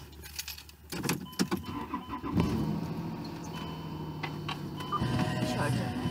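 Car keys jangling and clicking at the ignition, then the car's engine starts about two seconds in and idles steadily. Music from the car radio comes on near the end.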